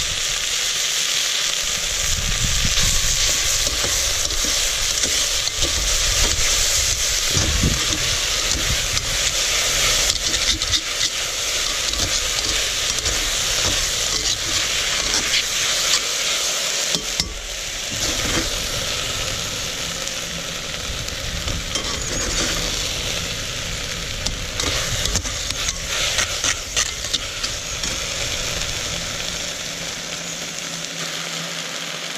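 Sliced onions sizzling steadily in a hot cast iron cauldron on a wood stove, with frequent scrapes and clicks of tongs and a spatula stirring them against the pot. A low rumble runs underneath for much of the time.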